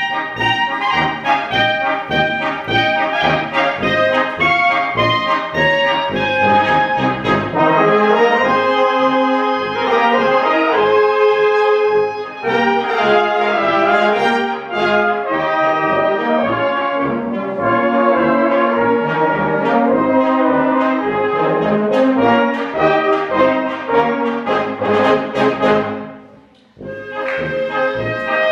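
A Swabian-style brass band of flugelhorns, horns, tuba and clarinets playing live with a steady beat. Near the end the music breaks off for a moment, then starts again.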